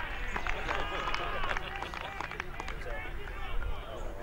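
Several voices shouting and calling over one another at a football game, over a steady low rumble.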